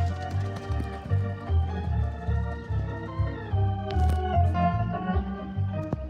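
Organ music: a melody of held notes over a bass line of short, evenly repeated notes, played over outdoor loudspeakers.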